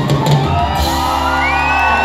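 Live pagode band playing, the drumming giving way about a second in to a long held chord, with the crowd shouting and whooping over it.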